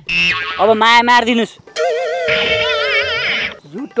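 A brief voice-like sound, then a short musical sound effect of about two seconds. The effect is a held tone under wavering, vibrato notes, and it starts and cuts off abruptly.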